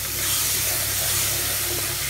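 Steady sizzling hiss of sugar water boiling and steaming in a hot pan of ghee-roasted maize flour as the halwa cooks.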